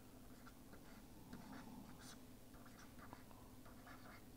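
Faint taps and scratches of a stylus writing on a tablet, over a low steady room hum.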